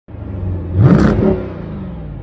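An engine revs once, rising sharply about a second in, then drops back to a low steady rumble.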